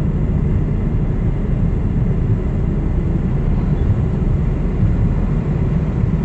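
Truck's diesel engine and road noise heard from inside the cab while driving slowly: a steady low rumble.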